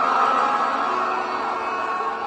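A large crowd cheering, a steady mass of voices.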